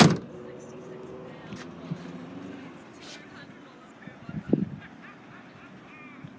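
Tailgate of a Nissan Murano SUV shut with one loud thump, followed by low background noise and a brief short sound about four and a half seconds in.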